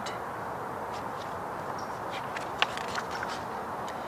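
A picture-book page being turned, with one short click about two and a half seconds in, over a steady background hiss.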